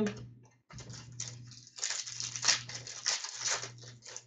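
Trading cards being handled and flipped through by hand: a quick run of papery flicks, clicks and rustles, busiest in the second half, over a steady low hum.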